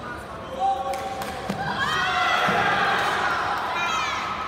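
Shouting from the hall during a karate kumite exchange, swelling into loud, sustained yelling and cheering about two seconds in. A couple of sharp thuds of feet on the mat come in the first second.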